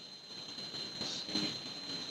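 Faint room tone under a steady high-pitched whine, with a man briefly muttering a couple of words a little over a second in.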